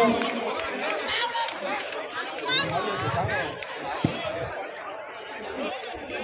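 Chatter of many spectators' voices overlapping, with one short thump about four seconds in.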